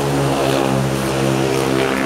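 A motor engine running with a steady, even drone, its pitch holding level.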